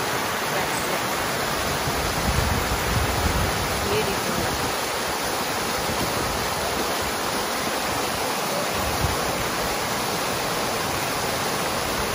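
A plaza water fountain, dozens of vertical jets splashing into a shallow pool, making a steady, continuous rush of falling water.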